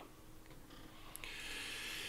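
A person's faint breath, a soft hiss of about a second starting just after the middle, with a small click just before it over a low steady hum.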